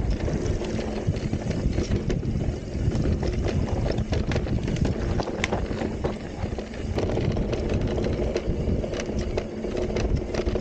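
Santa Cruz Heckler e-mountain bike riding fast down a dirt singletrack: a steady low rumble of wind on the microphone and tyres on dirt, with frequent sharp clicks and rattles from the bike over bumps.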